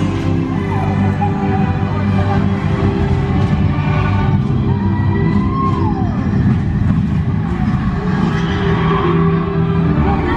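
Orchestral ride soundtrack music with a steady low rumble underneath, and one sliding tone that rises slightly then falls a little past halfway.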